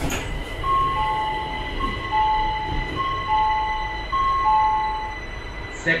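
Electronic two-tone chime on a Gurgaon Rapid Metro train, a high note overlapping a lower one, sounded four times in a row. It plays over the train's steady hum and rumble, with a thin high whine.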